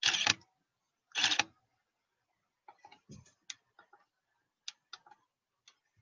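A DSLR camera shutter fires twice, about a second apart, taking stop-motion frames. It is followed by a few faint, scattered small clicks and taps.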